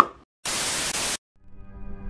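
A sharp click, then a burst of static hiss lasting under a second, used as a glitch transition. After a brief gap, outro music with long held notes fades in near the end.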